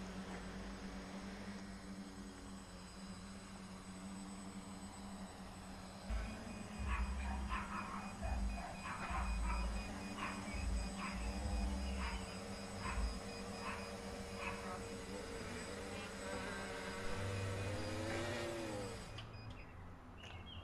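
Quadcopter's electric motors and propellers buzzing steadily in a hover, with low thuds and short clicks partway through. Near the end the pitch wavers and falls as the motors spin down and stop.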